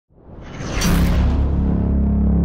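Title-sting sound effect: a whoosh that swells up from silence, peaks about a second in, and settles into a deep, held bass tone.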